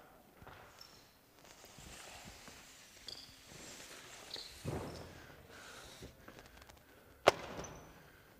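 Quiet gym room sound with scattered shoe squeaks and footsteps on a hardwood court. There is a dull thump about halfway through and one sharp knock about seven seconds in.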